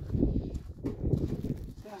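Footsteps crunching in snow, a run of uneven steps.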